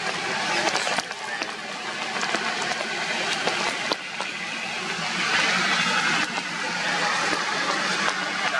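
Rain falling on tree foliage: a steady hiss with many sharp drips striking the leaves, growing a little heavier about five seconds in.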